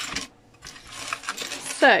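Small hard pieces of a diamond-painting kit clinking and rattling as they are handled on a desk: a short clink at the start, then about a second of looser rattling.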